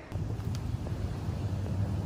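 Wind noise on the microphone outdoors: a low, steady rumble that begins suddenly just after the start.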